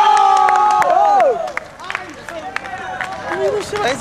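A group of young men shouting: a loud drawn-out yell that falls away after about a second, then scattered shorter shouts and calls with a few sharp clicks.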